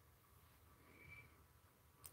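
Near silence: faint room tone, with a faint brief sound about a second in.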